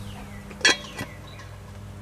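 Cast iron Dutch oven lid set down on the pot: one sharp metal clank a little over half a second in, then a lighter knock as it settles.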